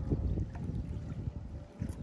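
Wind buffeting the microphone: a low, uneven rumble with no other clear sound.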